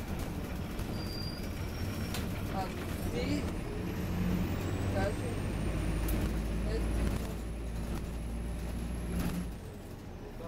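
Inside an Optare Versa single-deck bus on the move: the engine and drivetrain run with a low rumble that grows louder through the middle, and a high whine rises in pitch and then drops away near the end. Passengers' voices can be heard now and then.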